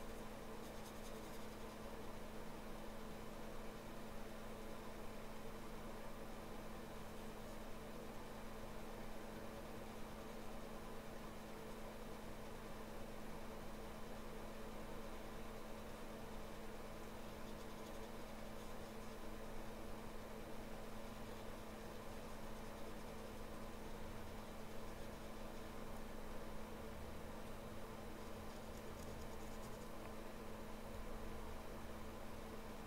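Faint strokes of a small round watercolour brush on paper, over a steady low hum.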